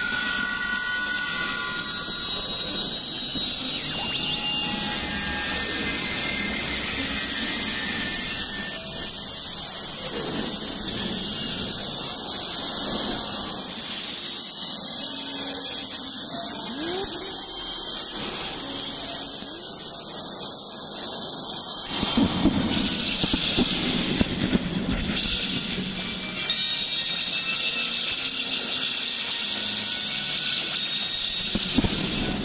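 Experimental electronic synthesizer music made in Reason, with vocoded and granular textures. A thin, high squealing tone is held over a hazy bed of synthesized sound. About two-thirds of the way through, a broad noisy wash takes over for several seconds, then the steadier texture comes back.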